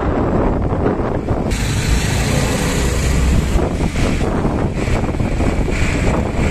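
Wind buffeting the microphone over road and engine noise while riding in an open auto-rickshaw. A stretch of louder hiss comes in about a second and a half in and drops back about two seconds later.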